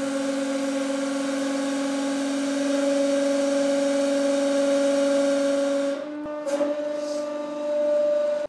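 150-ton hydraulic press running, its pump giving a steady whine with a hiss as the ram slowly drives down. About six seconds in the whine dips briefly with a click, then carries on at a slightly changed pitch.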